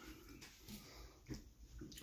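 Near silence, with a few faint, brief mouth sounds of a man eating.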